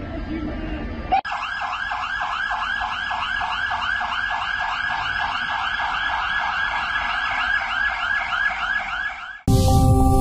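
An electronic siren in a fast yelp: rapid rising-and-falling sweeps about five times a second. It starts abruptly about a second in and cuts off just before the end, where a short music sting begins.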